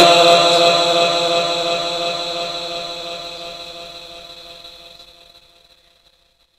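Quran recitation: the reciter's last held note rings on through the sound system's echo, fading away evenly over about five seconds to silence.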